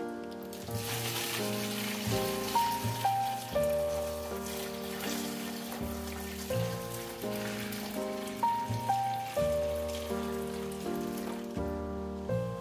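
Boiling water poured in a steady stream from a metal saucepan into a plastic tub, a continuous splashing hiss that starts just after the beginning and stops near the end, over background piano music.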